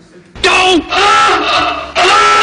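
A person's voice giving loud, drawn-out wailing cries. A shorter cry starts about a third of a second in, then a longer one follows, and another begins right at the end.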